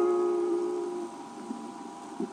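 The last strummed guitar chord of a song, played back through the speaker of a Grundig TK23 reel-to-reel tape recorder, ringing out and fading away about a second in, leaving faint tape hiss.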